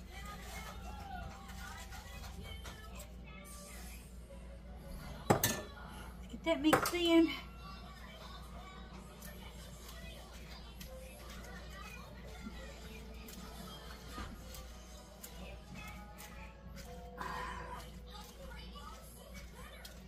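A sharp knock about five seconds in, then a short run of clinks with a brief ring as utensils hit a frying pan while spinach is stirred in, over faint voices and music in the background.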